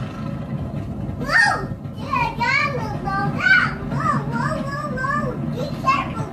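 A toddler squealing and calling out excitedly: a run of high, rising-and-falling calls that starts about a second in and goes on through the rest, over a steady low rumble.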